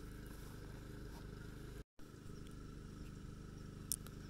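Steady low background hum and rumble, broken by a brief dropout about two seconds in, with a faint click near the end.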